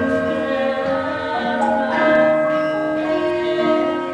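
Central Javanese gamelan ensemble playing: bronze metallophones, kettle gongs and hanging gongs sounding many overlapping, ringing pitched notes, with fresh strokes entering about once a second over a sustained shimmer.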